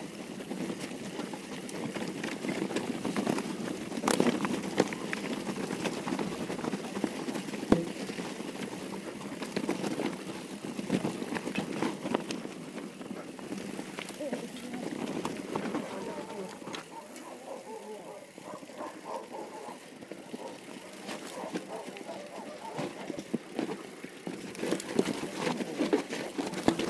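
Mountain bike riding down a rough dirt trail: tyres rolling over dirt and rock and the bike rattling, with sharp knocks from bumps about four and eight seconds in.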